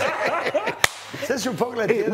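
Talking voices broken by one sharp crack a little under a second in, the loudest sound here, with a short lull around it.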